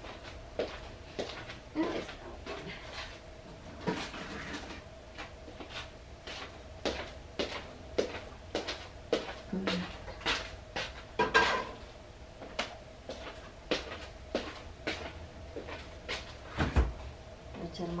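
Kitchen handling noise: a string of short knocks and clicks from a saucepan being moved and set on the stove and cupboard doors being worked, over a steady faint hum. A heavier thump comes near the end.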